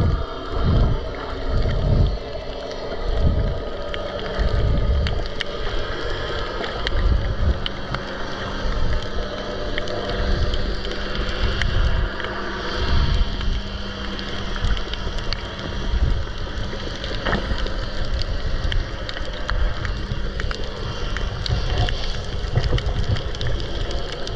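Underwater sound picked up by a GoPro on a pole: irregular low thumps and rushing as the camera housing moves through the water, with scattered faint clicks and a steady low hum underneath.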